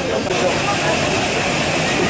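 Steady airy hiss of machinery running in a parked military transport aircraft's cargo hold, with a thin high whine joining it a moment in, under the chatter of visitors.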